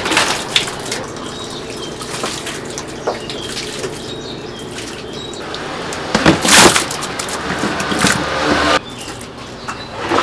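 Raw chicken wings being tipped by the crateful into a large plastic tub: wet slithering crashes of meat and plastic, loudest at the start and about six seconds in, over steady background noise.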